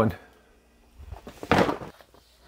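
After a moment of quiet, a short rustling handling noise comes about one and a half seconds in, with a few faint clicks just before it.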